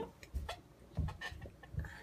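Several soft, separate clicks and light knocks, about five in two seconds, some with a dull thump under them.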